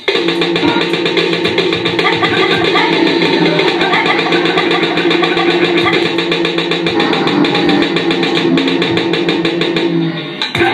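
Live band instrumental music from keyboards and electronics: a fast, even repeating pulse over sustained low held notes, without singing.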